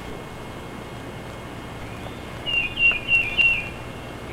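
A bird singing a short phrase of about five quick, high chirping notes, starting a little past halfway, over steady outdoor background noise.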